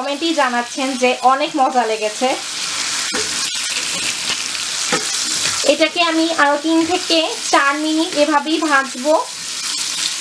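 Chunks of green apple sizzling as they fry in hot oil in a pan while a spatula stirs them, with a few sharp clicks a few seconds in. A voice talks over the sizzle at the start and again from about six to nine seconds in.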